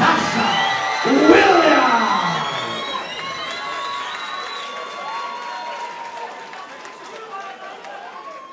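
Crowd cheering as a boxing winner is announced, with music playing. A long drawn-out shout comes in the first two seconds, and the noise then slowly dies down.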